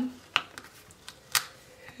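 Two short, sharp clicks about a second apart: fingernails tapping against a paper planner sticker as it is pressed down and moved on the page.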